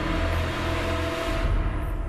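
Dramatic television score: held tones over a deep rumble, fading away near the end.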